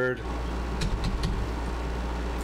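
A few faint computer keyboard keystrokes, three or four soft clicks about a second in, over a steady low hum.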